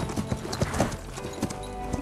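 Horse's hooves clopping on the ground in a string of uneven knocks, with steady background music underneath.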